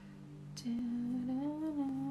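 A woman humming one long wordless note with a gently wavering pitch, starting about half a second in, over a faint steady low background tone.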